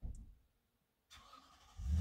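A sudden low thump, then about a second later a vehicle engine starting, swelling into a loud low rumble near the end.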